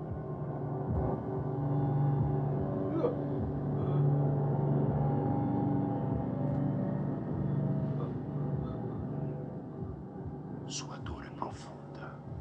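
Film score: a low, sustained drone held for several seconds, with faint voices over it and a few soft hissing whispers near the end.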